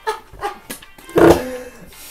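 Men's short, wordless outbursts of disgust, gagging and groaning after tasting a foul-flavoured jelly bean, with the loudest one about a second in.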